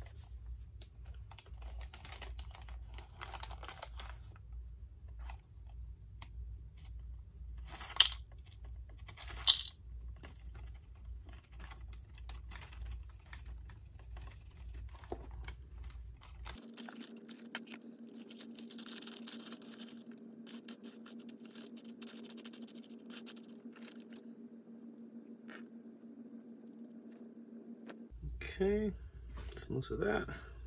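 Wax paper crinkling and rustling as silver filing dust is worked off it into a plastic pill bottle, with two sharper crackles about 8 and 9.5 seconds in. A low steady hum runs through the later part.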